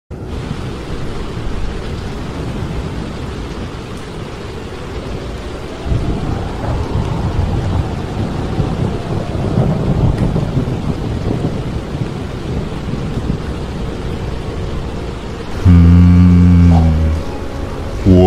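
Storm ambience of rain with rolling thunder, a steady rushing haze whose low rumbling swells about six seconds in. Near the end a loud low held tone sounds for about a second and a half.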